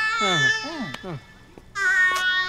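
A person's wordless vocal sounds, the pitch sliding up and down, over a film score holding steady notes. The voice stops about a second in, and a new held music chord comes in near the end.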